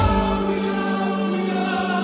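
Live pop concert music heard through a phone microphone in the audience: the drum beat drops out and a male singer holds one long sustained note over steady backing.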